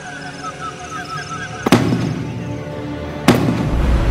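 Background music broken by two loud, sudden hits, film-style impact sound effects, about a second and a half apart, the first nearly two seconds in; a deep rumble comes in near the end.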